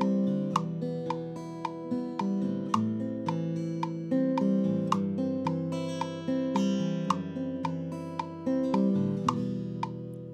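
Acoustic guitar strumming chords, about two strums a second, the last chord ringing out near the end.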